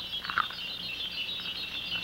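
A steady stream of faint, high-pitched chirping blips, like a twinkling soundtrack effect, with a couple of slightly lower blips just after the start.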